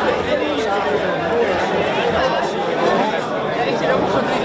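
Crowd chatter: many people talking at once in a steady, dense babble of overlapping voices.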